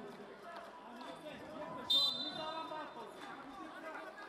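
A referee's whistle blows one short, high, steady blast about two seconds in, restarting the wrestling bout, over the murmur of a large arena crowd.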